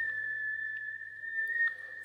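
A steady high-pitched electronic tone with a faint low hum beneath it, the background drone of a sci-fi soundscape.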